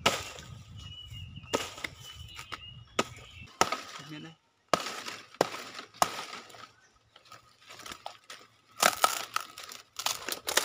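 A hatchet chopping into a rotting coconut palm trunk: irregular sharp strikes, several a few seconds apart, with the fibrous wood cracking and splitting.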